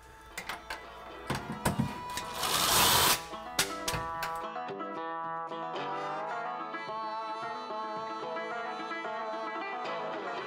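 Clicks and knocks of cabinet doors and hinges being worked on, with a short burst of a cordless drill-driver running about two and a half seconds in. From about halfway on, background music with plucked strings takes over.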